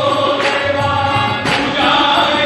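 Bengali devotional kirtan: men singing together over a harmonium, with two sharp percussion strikes about a second apart.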